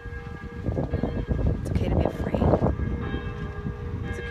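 Church bells ringing, their steady tones carrying on throughout. From about one to three seconds in, a loud rumbling noise swells over them and then fades.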